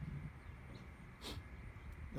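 Faint outdoor background noise with a low rumble, and one short hiss about a second and a half in.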